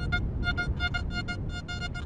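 XP Deus metal detector, set to Gary's Ultimate program, sounding a target: a rapid run of short electronic beeps of one steady pitch, about five a second, as the coil passes back and forth over it. The target reads 79–80 on the display.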